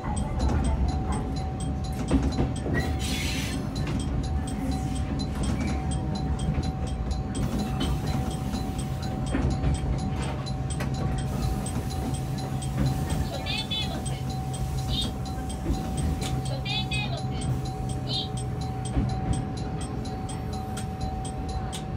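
Electric commuter train heard from the cab as it runs along the track into a station: a steady low rumble of wheels on rail, a constant hum and light regular clicking. Two short high squeals come about two-thirds of the way through.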